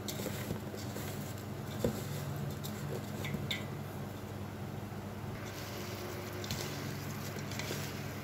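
A hand working a coarse mix of jaggery pieces and ground spices in a metal pot: a steady gritty rustling and scraping, with a couple of sharper clicks.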